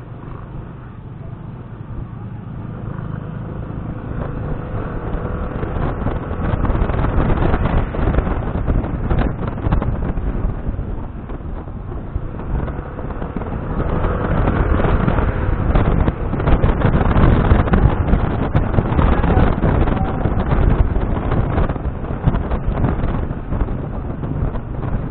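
Wind rushing over the microphone of a moving Yamaha scooter, with the scooter's engine running underneath. It grows louder as the scooter picks up speed, with a second louder stretch about halfway through.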